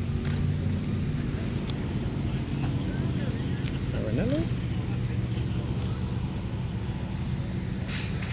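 A car engine idling steadily close by, with people talking in the background and a few faint knocks.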